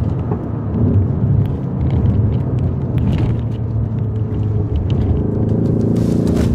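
Ford Focus ST's turbocharged four-cylinder petrol engine heard from inside the cabin while driving, a steady engine note with the pitch edging up near the end. It is overlaid with the artificial engine sound that the car plays through its cabin speaker in the sport driving modes.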